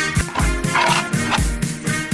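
Background music with a steady beat of low thumps, about two a second, under sustained instrumental notes.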